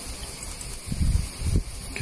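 Steady high-pitched hiss of a microphone's background noise, with a few soft low thumps about a second in and again a little later.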